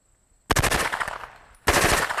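Submachine gun firing on full automatic: a burst of rapid shots about half a second in, lasting about a second, then a second burst right after it.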